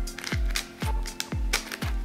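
Background electronic music with a steady kick-drum beat, two beats a second, over a held low tone. Light plastic clicks of a 3x3 puzzle cube being turned come between the beats.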